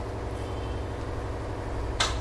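Steady low hum with a light, even background noise, unchanging throughout.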